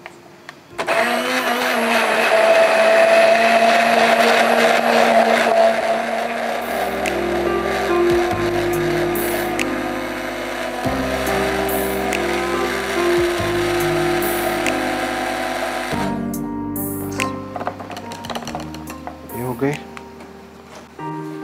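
Anex handheld stick blender running in a plastic beaker, puréeing herbs, garlic and a little water into a green chutney: a steady motor whine with churning. It starts about a second in and stops a few seconds before the end.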